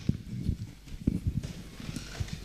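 Handling noise of a handheld microphone being passed from hand to hand: a string of soft, irregular low knocks and bumps over quiet room tone.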